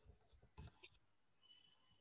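Near silence with faint rustles and clicks in the first second, from a headset microphone being handled and adjusted.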